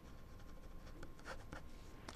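A quiet pause with faint scratching and a few small, scattered clicks, like light handling of things on a desk.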